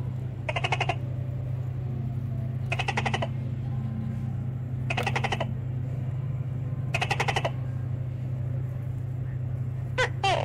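A short rattling animal call repeated four times, about two seconds apart, over a steady low hum.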